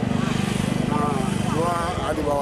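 A vehicle engine running with a low, steady, fast-pulsing hum that fades out near the end, under a man's voice.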